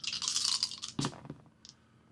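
A handful of plastic dice rattled in cupped hands for about a second, then thrown into a dice tray: one sharp clatter as they land, followed by a few small ticks as they settle.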